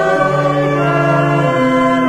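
Church choir singing a hymn in slow, held notes with organ accompaniment, the chord changing a couple of times.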